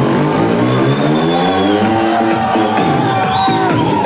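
Electronic dance music from a DJ set, playing loud and steady, with synth lines gliding up and down in pitch.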